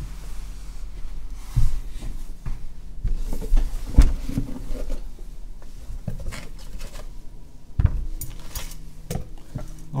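Knocks and clicks of objects being handled on a table as a brocade-covered box is opened and its lid set aside. The sharpest knocks come about a second and a half, four and eight seconds in.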